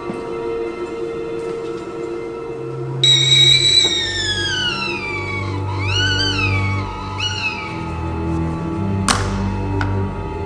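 Stovetop whistling kettle shrieking, starting suddenly about three seconds in, its pitch gliding down and then wavering up and down twice as it is lifted off the gas burner. Background music plays under it, and a sharp knock comes near the end as the kettle is set down.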